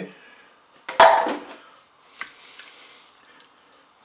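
Canned peeled tomatoes tipped out of a small tin into a multicooker pot on top of spaghetti, with one loud plop about a second in. Fainter scraping and a couple of small clicks follow.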